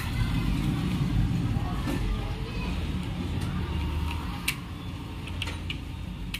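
Low, steady rumble of passing street traffic, with a few sharp plastic clicks from a toy truck's wired remote control being handled, the clearest about four and a half seconds in and a few more near the end.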